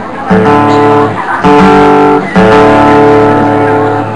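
Amplified guitar through a PA, striking three loud chords and letting each ring on: the first about a quarter second in, the second about a second later, the third just past the middle and held to the end.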